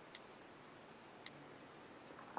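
Two faint iPhone on-screen keyboard key clicks, about a second apart, as letters are typed on the touchscreen, over near silence.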